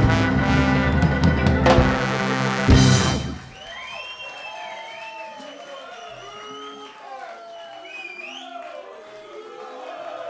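A live ska band with brass plays the last bars of a song and stops on a final hit about three seconds in. Then the audience cheers, with a few high whistles.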